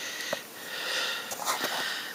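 A cat sniffing right at the microphone: breathy hissing that swells about halfway through.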